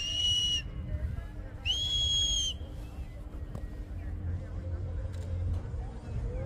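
A high-pitched whistle sounds twice, each blast steady and under a second long, the second about a second after the first ends, over a low background rumble.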